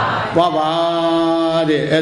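A Buddhist monk's voice chanting, holding one long steady note.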